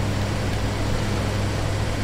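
Heavy construction machinery running steadily: an even, loud mechanical noise over a constant low engine hum.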